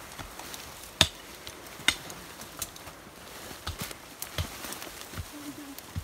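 Close-up handling noise from rope, harness webbing and clothing being worked by hand: a few sharp knocks and clicks, the loudest about a second in and another just before two seconds, over a low rustle.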